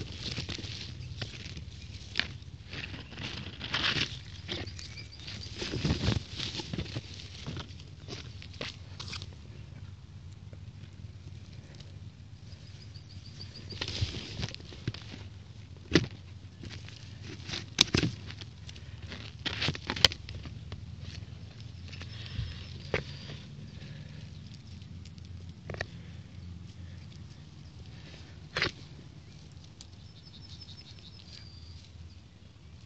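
Close rustling of leaves and grass, with sharp clicks and knocks, as a hand parts the plants and works in the soil right by the microphone. A faint, rapid, high chirping comes and goes a few times in the background.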